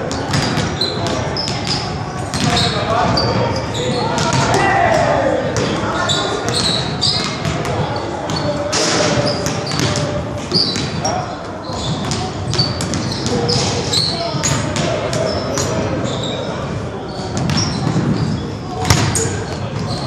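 Basketballs being dribbled on a hardwood gym floor, repeated bounces echoing in a large hall, with short high squeaks from sneakers on the court. The loudest single bounce comes near the end.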